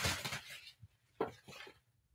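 Clear plastic packaging rustling as a quilted bag is handled and lifted out: a burst of short rustles over the first half second or so, then two brief rustles past the one-second mark.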